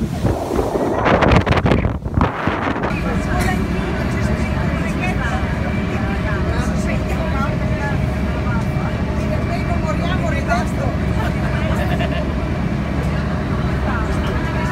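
Wind buffeting the microphone for the first few seconds on the open deck of a passenger boat. Then the boat's engine drones steadily inside the cabin, with passengers chattering quietly under it.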